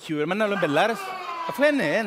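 A man's voice vocalising with strongly swooping pitch, without clear words.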